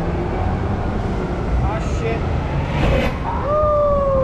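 City street traffic noise, a steady low rumble, with a drawn-out falling call sliding down over about a second near the end.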